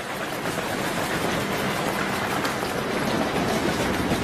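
Steady rumble and hiss of a busy airport terminal hall, with no single sound standing out.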